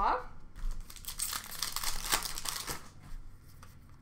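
Trading cards being handled and sorted by hand: a run of rustling and crinkling with small clicks that dies away in the last second.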